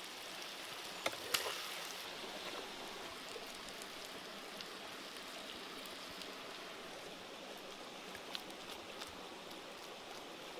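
Steady hiss of fish, chillies and herbs sizzling in a hot wok over a wood fire, with a few sharp clicks: two about a second in and one near the end.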